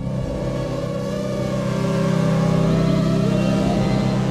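Logo-intro sound effect: a loud, sustained low drone that swells gently, with a faint rising glide near the end.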